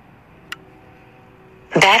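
A single sharp click, then a faint steady tone, and near the end a drone controller app's synthesized voice starts its low-battery warning that the aircraft will return to the home point.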